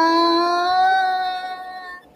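A woman's singing voice holding one long note on the word "fly", rising a little in pitch about half a second in and fading away near the end.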